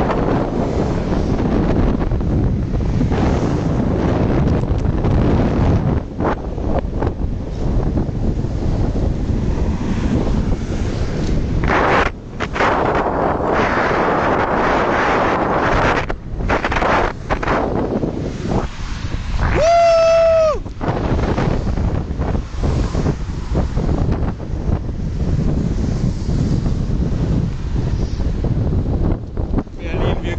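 Wind buffeting the microphone of a camera carried on a moving bicycle: a loud, steady rush with a few brief dips. About two-thirds of the way through, a clear pitched tone sounds for about a second and drops in pitch as it ends.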